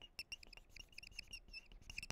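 Faint marker pen squeaking and scratching on a whiteboard as handwriting is written, in quick irregular high-pitched strokes.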